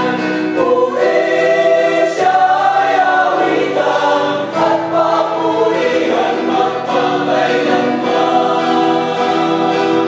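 Small mixed choir of men and women singing a Tagalog praise song together in held, harmonised notes.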